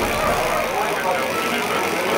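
North American T-6's Pratt & Whitney R-1340 Wasp radial engine running steadily as the aircraft flies an aerobatic manoeuvre, with voices mixed in.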